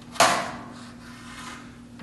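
Tung wood box lid coming free of its groove: a short wood-on-wood scrape about a quarter second in, fading over half a second.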